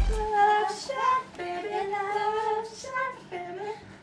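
Young women singing unaccompanied in a small room, in held, wavering notes. A loud dance track cuts off just as it begins.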